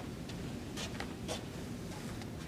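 A few short scratchy rustles over a low, steady room hum.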